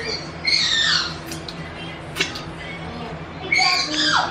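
High-pitched squealing calls, two of them, each falling in pitch: one about half a second in and another near the end, with a few sharp clicks between.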